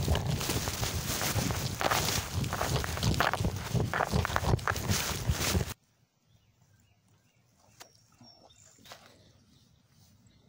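Loud rustling, scuffing and knocking of a handheld camera being jostled on the move, with footsteps mixed in. It cuts off abruptly a little over halfway through, leaving a quiet stretch with a few faint clicks.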